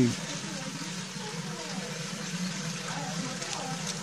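Steady flow of running water: spring water coming down from the hill.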